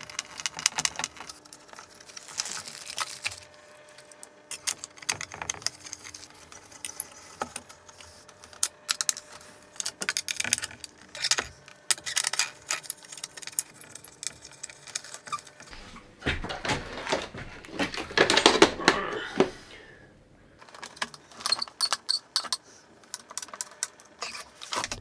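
Small metal clicks and rattles of screws and mounting nuts being worked with a screwdriver on an aluminium mounting plate. Irregular ticks throughout, with a louder stretch of rattling and scraping about two-thirds of the way through.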